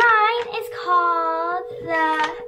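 A girl's voice in a drawn-out, sing-song delivery, with one long held note in the middle, over a steady faint tone.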